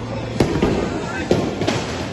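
Bowling ball released onto the lane, landing with a sharp thud about half a second in and then rolling, with two more sharp knocks about a second later over the steady noise of a busy bowling alley.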